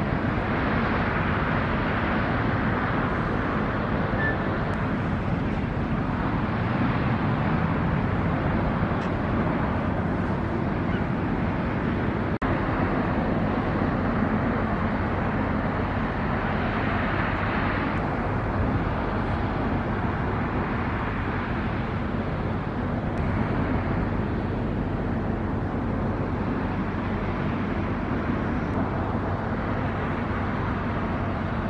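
Steady outdoor background noise: a constant rush with a faint low hum under it, unchanging throughout.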